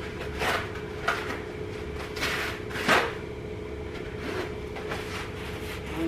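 Paper towels being pulled and torn off a roll: a few short rustling, tearing noises, the loudest about three seconds in, over a steady hum.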